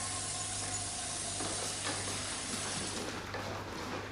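A steady hiss with a low hum beneath it. The highest part of the hiss falls away about three seconds in.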